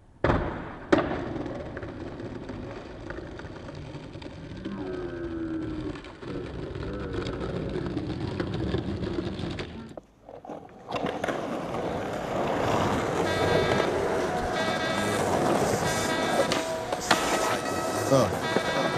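Skateboard sounds: two sharp clacks near the start, the louder about a second in, then the wheels rolling with a rough, steady rumble. After a brief drop-out about ten seconds in, music with steady sustained notes comes in over the rolling of skateboard wheels on asphalt.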